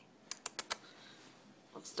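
Four short, sharp clicks in quick succession about a third of a second in, then quiet.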